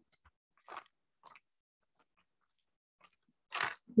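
Clay and its plastic wrapping being handled: four brief, soft crinkly rustles with near silence between, the last one near the end the loudest.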